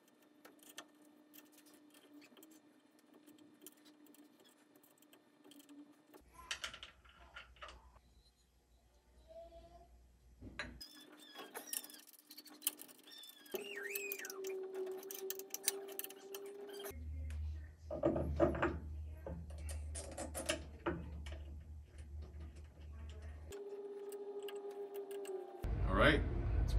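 Metal parts clinking and knocking as an aluminium adapter plate is fitted to a rotary table and its bolts are tightened with a hex key, in scattered small clicks, over a steady low hum.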